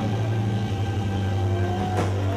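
Live rock band's amplified instruments holding a loud, sustained low drone with no drum beat, and a higher tone sliding upward near the end.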